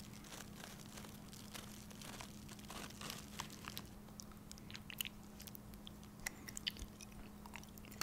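Close-miked mouth sounds of biting and chewing: faint, scattered crunchy clicks that come more often from about halfway through, over a faint steady hum.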